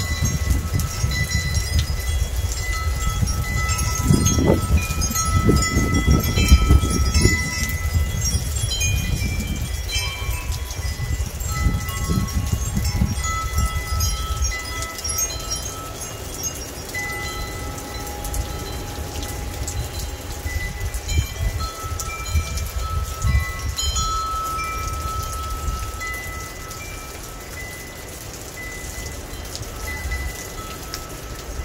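Wind chimes ringing in the wind, many notes overlapping, busiest in the first half and thinning out near the end, over steady rain. A low rumble swells about five seconds in and then fades.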